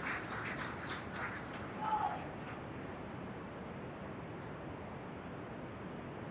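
Low, steady background hiss, with a brief faint voice-like sound about two seconds in.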